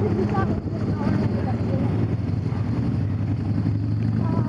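Vehicle engines idling in slow traffic, a steady low hum, with faint voices in the first second or so.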